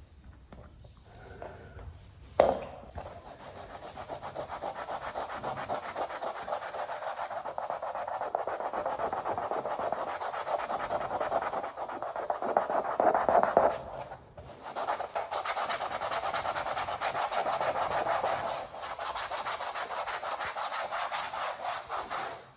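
Continuous rubbing on a floor surface, a hand working a freshly filled hard-wax repair smooth, with a sharp knock about two seconds in and a brief pause about two-thirds of the way through.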